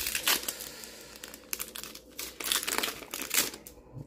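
Foil Pokémon booster pack wrapper crinkling in the hands as it is opened, in several short irregular crinkles.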